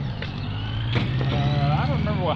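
A motor vehicle engine running close by, a steady low hum with a faint whine rising in pitch early on. A voice comes in over it about a second and a half in.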